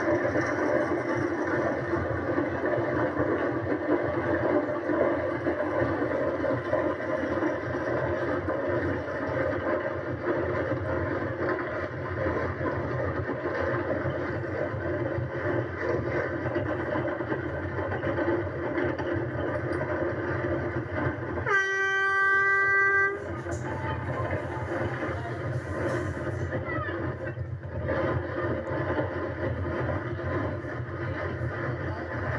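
Wheels of a carrilana gravity-racing cart rolling fast down asphalt, a steady loud rumble with rushing air, heard through a TV's speaker. About two-thirds of the way through, a horn sounds once for about a second and a half.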